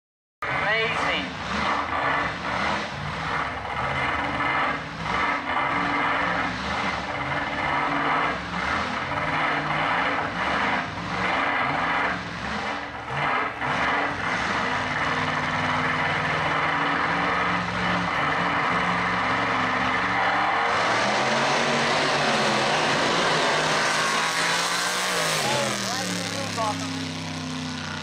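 Engine of a 1959 Cadillac Coupe DeVille drag car running unevenly at the starting line, then launching about twenty seconds in and running at full throttle down the strip, its pitch climbing as it pulls away.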